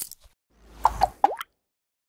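Logo-animation sound effect: a low swell that builds for about a quarter second, then three quick pops about a fifth of a second apart, the last one sliding up in pitch.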